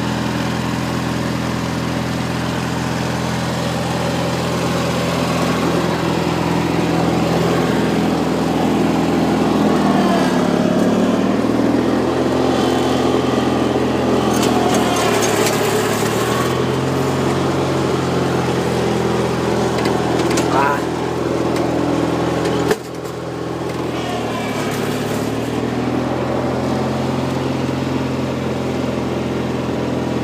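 Ride-on lawn tractor engine running steadily while towing a lawn sweeper. Its pitch dips and recovers a few times in the middle. The sound breaks off abruptly about two-thirds of the way through and picks up again at once.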